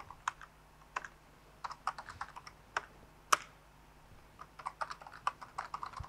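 Typing on a computer keyboard: scattered single keystrokes at first, then a quicker run of keystrokes in the last second and a half.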